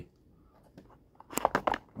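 Clear plastic packaging of a carded action figure crackling as it is handled: a short burst of crackles about a second and a half in.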